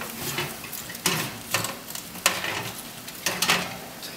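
Metal baking tray of meatballs being slid out along a wire oven rack and lifted out, with a few sharp metal clacks and scrapes over a faint steady hiss.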